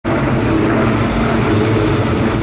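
Ford Mustang V8 with a custom race cam, running steadily at low speed without revving.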